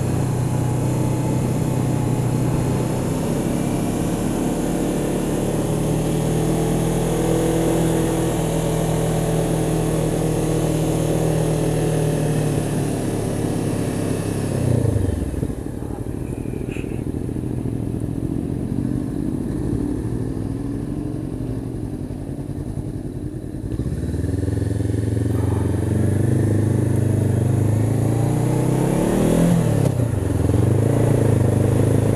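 Honda CB500X parallel-twin engine pulling steadily uphill under wind rush. About halfway through, the revs drop away as the bike slows for a hairpin bend, and the engine and wind go quieter. About eight seconds later the engine picks up again, and the revs climb near the end.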